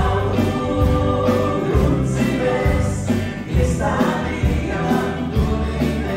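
Live band playing a song, with electric guitars, bass, keyboard and drums, and voices singing.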